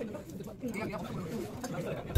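People talking at a dining table, low conversational voices.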